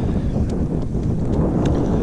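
Wind buffeting the camera's microphone: a steady, loud low rumble.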